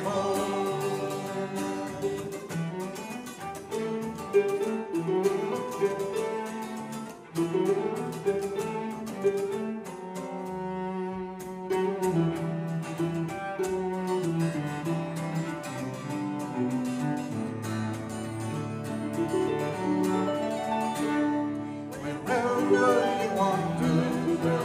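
Acoustic folk band playing an instrumental passage: bowed cello over harp and acoustic guitar.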